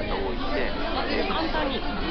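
Speech over background chatter.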